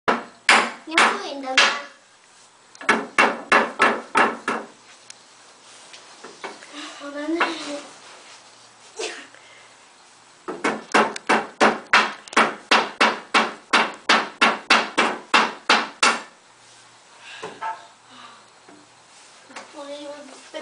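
Hammer blows on the unfinished pine slats of a wooden bunk-bed frame, struck in runs: a few blows at the start, a quick run of about eight soon after, then a long steady run of about twenty at three to four blows a second in the second half.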